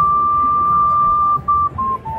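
A melody in high, pure tones: one note held for about a second and a half, then two short notes, the last a step lower, over faint crowd noise.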